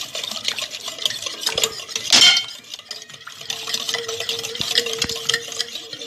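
A whisk beating milk, eggs and sugar in an enamel pot: rapid scraping and clinking strokes against the pot, with one louder clatter about two seconds in.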